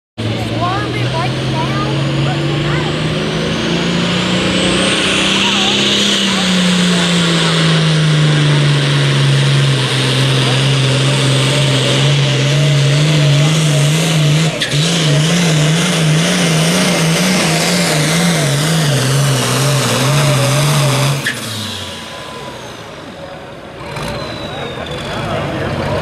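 A pulling vehicle's engine runs at high revs under heavy load through a sled pull. Its pitch climbs over the first few seconds, then sags, and in the second half it wavers rapidly up and down before the engine cuts off about 21 seconds in.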